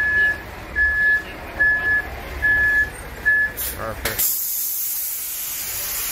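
Concrete mixer truck's backup alarm beeping five times, evenly spaced, over its idling engine as the truck is moved. The beeping stops, and about four seconds in a loud, steady hiss starts and keeps going.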